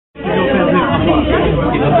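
People talking, several voices overlapping, cutting in suddenly just after the start.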